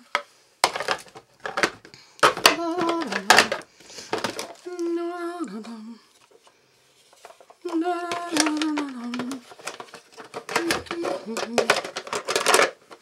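A woman singing short wordless 'la la' phrases to herself, each ending on held notes that step down in pitch, repeated several times with a brief pause about two-thirds of the way through. Light clicks and knocks of kitchen items being handled come between the phrases.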